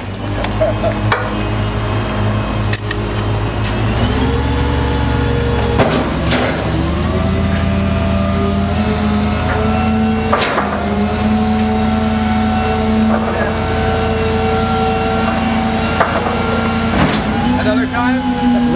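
Gasoline engine of a GMC C7500 rear-loader garbage truck with a Pak-Mor body, running steadily and speeding up about four seconds in as the packer hydraulics run to compact the load. A few sharp metallic knocks come through over it.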